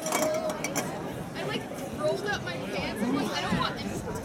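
Background chatter of several people's voices talking and calling out at once, none of it clear speech, with a few short sharp knocks or claps among it.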